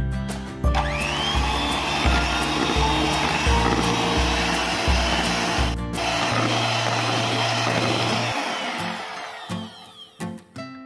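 Miyako electric hand mixer starting up with a rising whine under a second in, then running steadily at medium speed as its beaters work eggs into creamed butter and sugar, and dying away near the end. Background music with a steady beat plays underneath.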